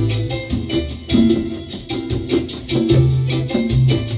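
Band music, the instrumental opening of a song: bass and percussion playing a Latin, salsa-like beat.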